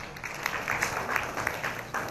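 Audience applauding: many hands clapping together, thinning out near the end.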